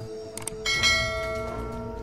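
Subscribe-button sound effect: a couple of quick mouse clicks, then a bright notification bell chime that rings on and slowly fades.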